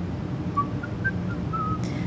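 Someone softly whistling a few short notes that rise and then fall, over a steady low hum of room noise.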